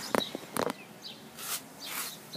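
Handling noise of a small camera close to its microphones, which are covered by a sponge windscreen: a few sharp clicks and taps in the first second, then short scraping rustles.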